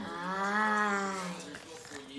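A small terrier puppy's long, drawn-out scream, rising then falling in pitch and dying away after about a second and a half: the puppy is begging for food.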